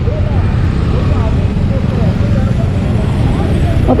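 Motorcycle underway in a group of bikes, its engine and wind on the action camera's microphone blending into a steady low rumble.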